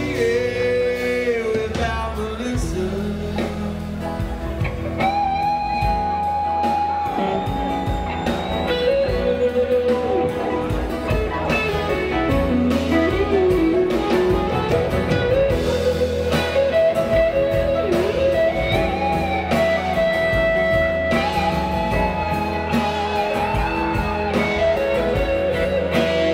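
Live rock band playing an instrumental passage of a slow ballad through a PA: amplified guitars and drums, with a lead line of long, held and bending notes over the band.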